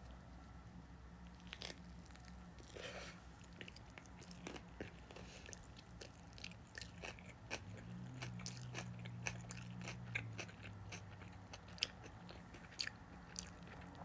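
Quiet close-up chewing of a sushi roll: a bite at the start, then soft, wet mouth clicks as the rice and fish are chewed with the mouth closed.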